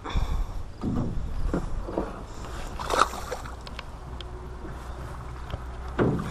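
Irregular scuffs and knocks of handling in a small aluminum boat, the sharpest about three seconds in, over a steady low rumble.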